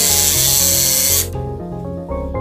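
Cordless drill driving a screw down through a 2x4 into a wooden runner: a loud, even burst that stops sharply after about a second and a quarter. Background music plays throughout.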